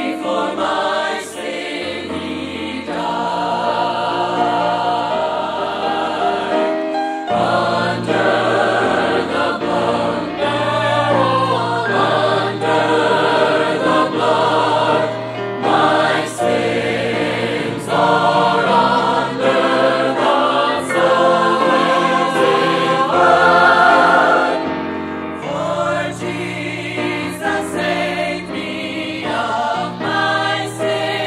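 Mixed choir of men and women singing a southern gospel convention hymn in full harmony, with piano accompaniment.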